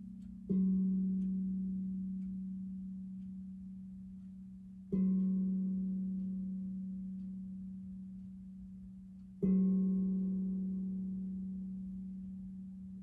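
A low metal tone struck with a mallet three times, about four and a half seconds apart, each note ringing on and slowly fading before the next.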